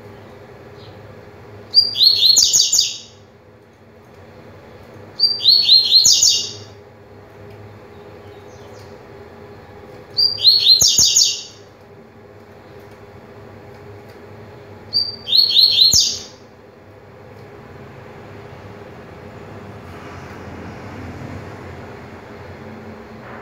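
Double-collared seedeater (coleiro) singing its tui-tui song: four high-pitched phrases of about a second each, repeated a few seconds apart, each opening with a short note.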